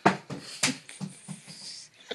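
A teenage boy laughing in a string of short, breathy bursts, about three a second.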